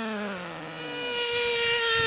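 Small two-stroke engine of a large-scale RC Baja buggy buzzing. Its pitch falls over the first second, then a steady, higher note comes in about halfway and grows louder.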